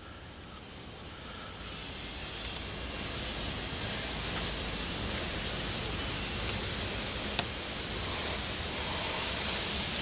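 A steady rushing noise that grows louder over the first few seconds and then holds, with a few faint brief clicks.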